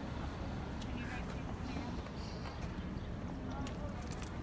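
Faint, indistinct voices over a steady low rumble of outdoor noise, with a few light clicks.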